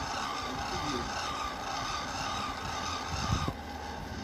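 A 200-watt friction-drive electric bicycle motor running under load, its roller driving against the rear tyre with a steady whine and rasping rub. The whine cuts out about three and a half seconds in, just after a couple of low knocks.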